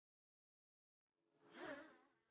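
Dead silence for just over a second, then a faint pitched sound effect from the subscribe-button animation that wavers in pitch and swells near the end.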